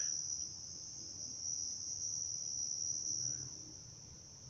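Crickets chirring in a steady, unbroken high-pitched chorus.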